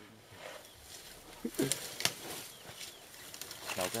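Two African bush elephant bulls sparring in dense brush: branches and twigs crack and snap a few times, with a cluster of sharp cracks near the end as they come head to head.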